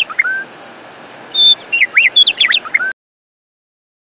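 Birdsong: a short phrase of clear whistled notes and quick rising sweeps, the same phrase heard twice, cutting off suddenly about three seconds in.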